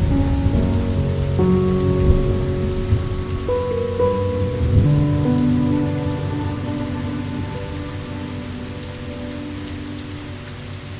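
Steady rain, with a low rumble in the first half that fades after about five seconds, under slow, sustained music chords.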